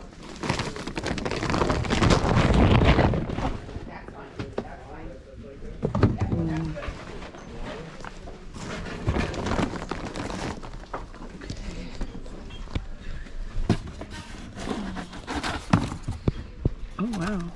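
Fabric rustling right against the microphone as a fuzzy towel is handled and wrapped, loudest in the first few seconds, followed by scattered knocks of things being handled, with people's voices in the background.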